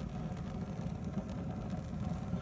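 Stainless steel propane burners of a Weber Spirit II E-210 gas grill running lit, giving a steady low rush of gas flame.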